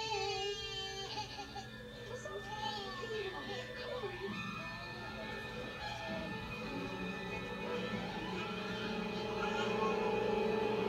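Film soundtrack: a baby crying and wailing over tense orchestral music, which swells and grows louder near the end.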